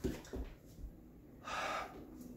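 A man's short, audible breath about one and a half seconds in, following a couple of soft thuds of feet and knees landing on a hardwood floor as he gets down off a couch.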